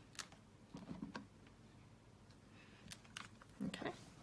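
Clear acrylic stamp block with a photopolymer stamp pressed onto card and lifted off the mat: a few faint sharp clicks and soft knocks, about a second in and again near the end.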